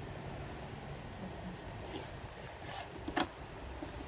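Smokeless rotating electric BBQ grill running with a steady low hum from its motor and fan, with a sharp click about three seconds in.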